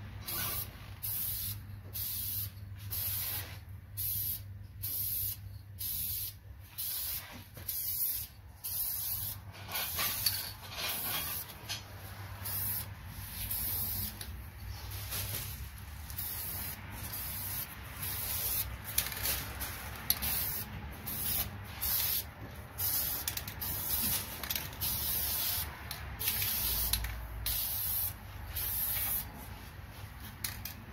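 Aerosol spray-paint can spraying onto a brake caliper in short, repeated hissing bursts, about one a second, with brief pauses between strokes.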